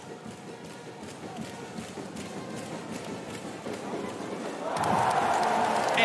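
Basketball arena crowd murmuring during live play, then swelling louder into cheering about five seconds in.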